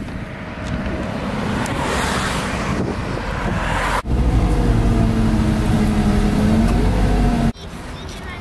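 City bus heard from inside while driving: a heavy low rumble with a whine that slowly rises and falls in pitch. It starts suddenly about halfway through and cuts off suddenly near the end. Before it comes fainter outdoor street noise.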